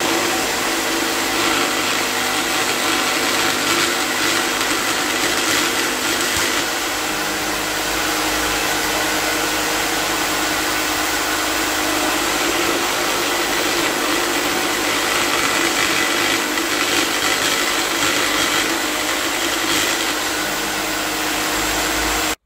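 Electric jigsaw mounted upside down under a bench table, running steadily as its blade saws through a thin wooden strip: a constant motor whine with the rasp of the blade.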